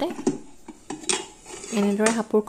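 Aluminium pressure cooker lid clinking and scraping against the pot as it is twisted loose and lifted off, with a few sharp metal clicks and brief ringing.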